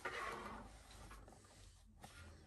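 A faint, brief rustle of cardboard trading-card blaster boxes being shifted on a tabletop, fading within the first second.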